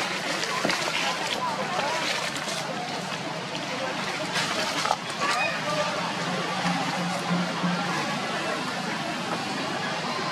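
Indistinct voices of people talking at a distance over a steady outdoor din, with scattered short clicks and rustles.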